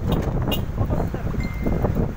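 Wind buffeting the phone's microphone, an uneven low rumble, with a sharp click about a quarter of the way through and a brief thin high tone near the end.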